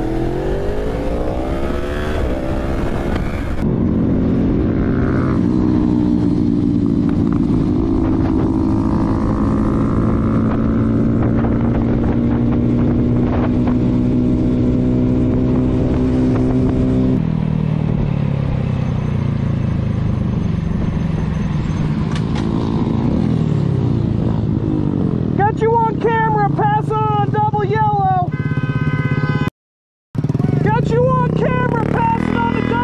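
Motorcycle engines heard from the riders' cameras: an engine revs up for the first few seconds, then holds a steady note while cruising, and later shifts to a lower, changing note. A person's voice is heard over the engine near the end.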